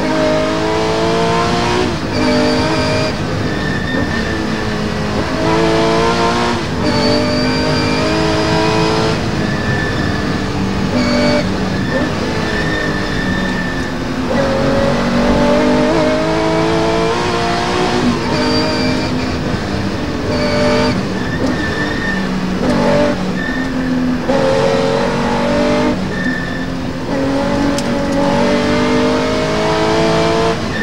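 Porsche 911 rally car's flat-six engine heard from inside the cabin, pulling hard up through the revs again and again. Each rising climb in pitch breaks off at a gearchange or lift and drops back before climbing again.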